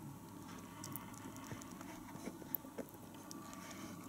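Faint, scattered wet clicks of Achatina giant land snails chomping on orange flesh.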